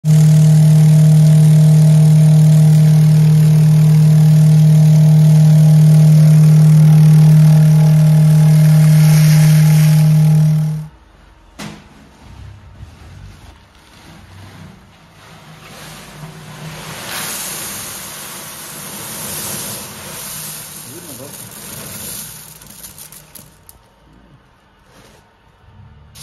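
Vibratory finishing machine running with a loud steady hum and the rattle of its abrasive chips as they stream out through the unloading port; the machine stops suddenly about ten seconds in. Then a plastic sack rustles and media chips pour into the empty tub.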